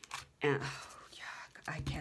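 A woman speaking softly: one spoken word, then quiet near-whispered speech.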